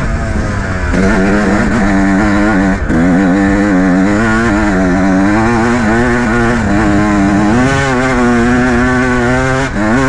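Dirt bike engine running under the rider, its pitch rising and falling constantly as the throttle is worked. The note drops briefly about a second in, again near three seconds, and just before the end.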